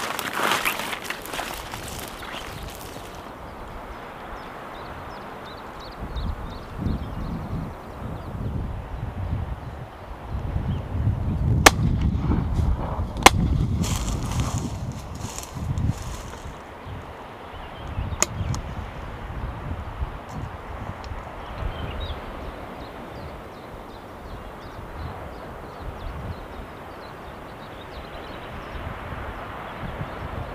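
Footsteps brushing through dry grass at first, then wind buffeting the microphone. Two sharp, loud cracks come about a second and a half apart near the middle, and a fainter one a few seconds later.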